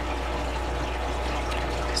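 A steady, watery-sounding hiss over a constant low hum, with no distinct events.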